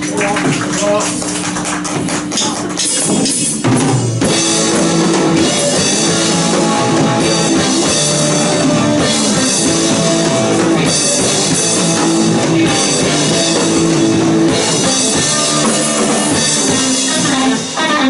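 Live rock band with electric guitars, saxophone and drum kit playing an original song. Held notes ring out first, then the full band with drums comes in about four seconds in and plays on loudly.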